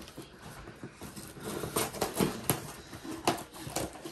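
Scissors cutting the tape and cardboard of a shipping box: a string of short, irregular snips and crackles that starts about a second and a half in.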